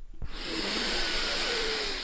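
A steady hiss of rushing air begins about a quarter second in and holds, easing slightly near the end.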